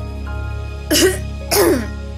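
A woman coughing twice into her hand, about a second in and again half a second later, over soft instrumental backing music with sustained notes.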